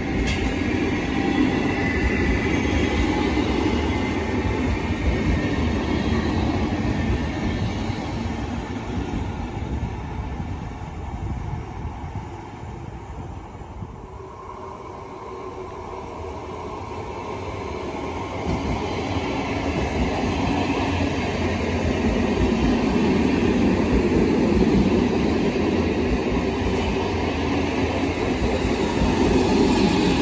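NSB Class 69 electric multiple unit running along the platform and fading as it draws away, with wheel and rail noise. About halfway through a second red electric train is heard approaching, growing steadily louder until it runs in close by near the end.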